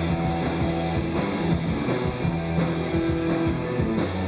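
Live rock band playing: guitar, bass guitar and drum kit together, with steady drum hits under sustained guitar notes.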